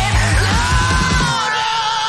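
Hard rock song with a long held, yelled vocal note over drums and bass; the drums and bass drop out about a second and a half in, leaving the held voice.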